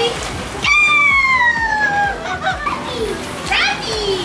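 Children playing and shrieking, with one long high squeal that slides down in pitch about a second in.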